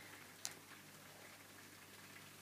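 Near silence: room tone with a faint steady low hum, broken by a single brief click about half a second in.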